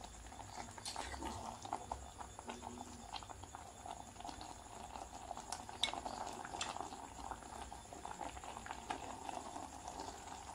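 Breadfruit and spinach curry simmering in a stainless steel saucepan on a gas stove, its thick sauce bubbling with a steady faint crackle of small pops and a few sharper ticks.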